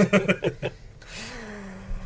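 Men chuckling briefly over a spoken "all right", then one voice holding a long, level hesitation sound.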